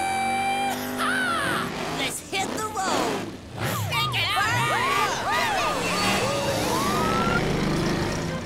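Cartoon soundtrack of animated monster trucks pulling away: engines revving under a run of whoops and cheers rising and falling in pitch, with music behind.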